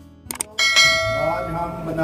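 Subscribe-button animation sound effect: two quick mouse clicks, then a bright bell ding that rings on and slowly dies away.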